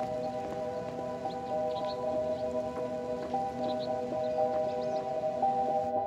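Background music from the drama's score: slow, held notes that move to new pitches every second or two.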